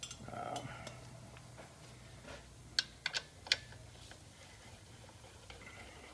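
Metal hand tools clinking: four sharp clicks in quick succession about three seconds in, as a socket and extension are handled and fitted, over a low steady hum.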